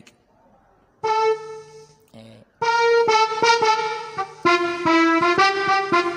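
Electronic keyboard playing a song intro in sustained block chords rather than single notes, in the key of F. One held sound enters about a second in, and fuller chords follow from about halfway, changing several times.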